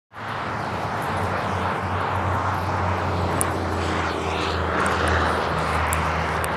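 A steady low engine drone, even in pitch and level, over a wash of outdoor noise.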